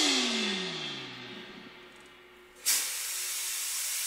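Close of an electronic music piece: a synthesizer tone glides down in pitch and fades away over about a second. After a quieter moment, a steady hiss starts suddenly about two-thirds of the way in.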